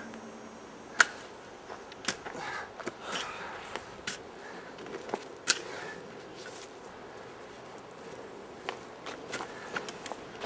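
A shovel digging into the forest floor: irregular sharp scrapes and knocks, roughly one every second, the loudest about a second in and again past the middle, over a soft rustle of leaves and dirt.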